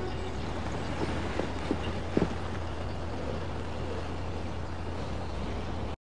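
A steady low rumble with a few faint knocks between about one and two and a half seconds in.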